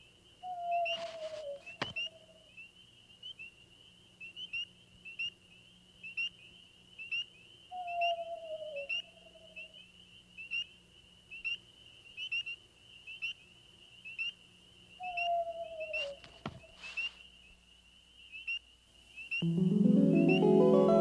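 Stylised animated-film sound effects: a steady run of short, high chirps repeating more than once a second, with three slow, falling whistle-like tones about seven seconds apart and a few soft clicks. Music with rising notes swells in near the end.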